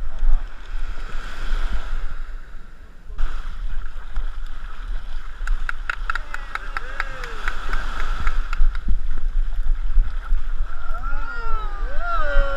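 Shallow surf washing at the shoreline, with wind rumbling on the microphone. From about six seconds in there is a run of sharp clicks and splashing as a hooked blacktip shark is pulled through the shallows, and faint voices come in near the end.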